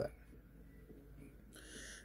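Faint room tone, then a short breath drawn in near the end.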